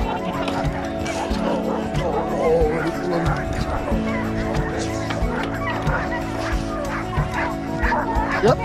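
A yard of sled dogs barking, many short wavering calls overlapping throughout, over background music.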